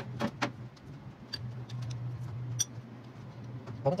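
A few scattered light metallic clicks of a box-end wrench on the bolts of a tractor's power steering pump as it is being unbolted, over a steady low hum.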